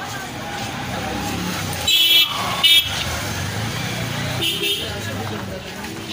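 Busy street ambience of traffic rumble and background voices, with two short horn toots about two seconds in and a fainter one later.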